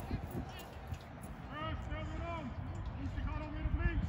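Two drawn-out shouts across a football pitch, the first about a second and a half in and the second near the end, over a low rumble of wind on the microphone.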